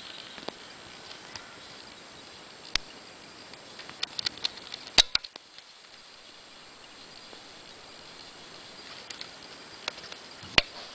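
Scattered light clicks and taps as a kitten paws and brushes against the camera and the desk beside it, over a steady hiss; a quick cluster of taps about four to five seconds in holds the loudest knocks, and two more come near the end.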